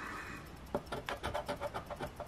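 Plastic scratcher tool scraping the latex coating off a scratch-off lottery ticket in quick short strokes, several a second. It is faint, and the strokes are mostly from about three-quarters of a second in.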